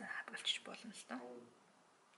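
Only speech: a woman talking, her voice stopping about a second and a half in.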